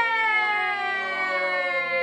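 A long drawn-out cheer of "yay" from several voices, held as one sustained note that slowly falls in pitch.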